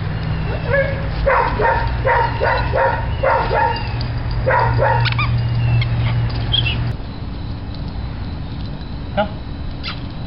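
A dog yapping: a quick series of short, high-pitched barks over the first five seconds or so, then the barking stops.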